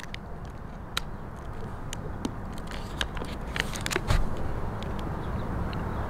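A person chewing a bite of almond chocolate bar, heard as scattered small clicks and crackles over a steady low outdoor rumble.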